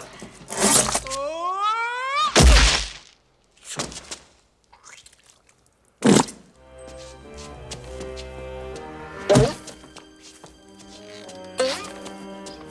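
Slapstick film soundtrack: a string of sharp hits and thuds, with a pitched wail rising for about a second before the loudest, deepest crash. After a lull, more single sharp hits land over sustained music.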